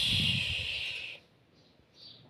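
A breathy exhale close to the microphone, a loud hiss over a low rumble that cuts off just over a second in.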